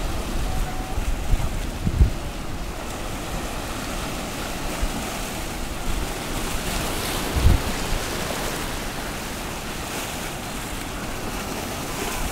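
Small waves washing and foaming over rocks in shallow surf, a steady rush of water, with wind noise on the microphone. Two dull thumps come about two seconds in and again past seven seconds.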